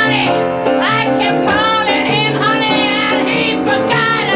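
A woman singing an improvised song in a bright, held voice with vibrato, over steady piano chords.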